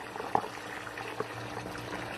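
Water trickling and pouring steadily, with a faint low hum under it and a couple of small ticks.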